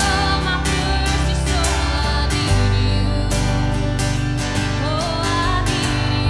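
Live worship band playing a slow song: a woman singing lead over acoustic and electric guitars, electric bass and a drum kit with cymbals. The bass comes in heavier about halfway through.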